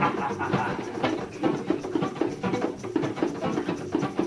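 Acoustic guitars strummed together in a steady, brisk rhythm.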